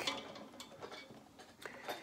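Faint, scattered light ticks and clicks: handling noise from fingers and picks on a banjo while the player sets his hands, with no notes sounding.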